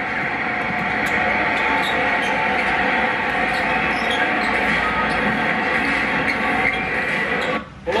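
Steady arena crowd noise from a basketball game broadcast, heard through a TV speaker, with faint dribbling of the ball. The sound drops out abruptly for a moment near the end.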